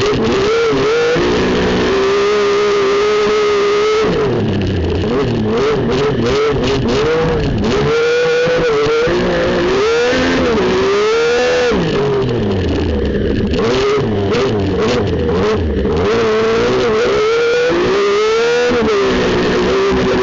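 Speedcar Wonder 850 race car's engine heard from inside the cockpit, revving hard with its pitch rising and falling again and again as the driver works through the gears.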